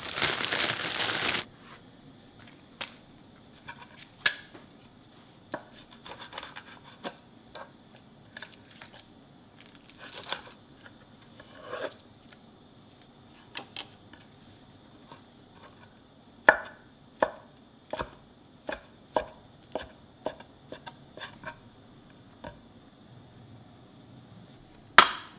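A plastic zip-top freezer bag crinkling loudly for the first second or so. Then a kitchen knife on a wooden cutting board slicing a thin sheet of fried egg white into strips: scattered cuts at first, then a quicker run of roughly two cuts a second in the last third.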